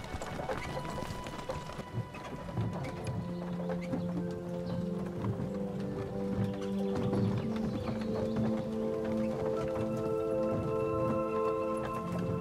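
Horses' hooves clip-clopping on a dirt track as a horse-drawn carriage and a mounted rider move off. Background music with long held notes comes in under the hoofbeats about two and a half seconds in.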